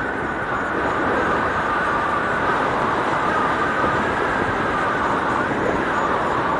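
Airflow rushing over the camera microphone of a paraglider in flight: a steady wind rush with faint wavering whistle tones running through it.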